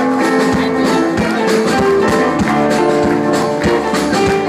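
Live rock band playing, with electric guitars, bass and keyboard over a steady drum beat.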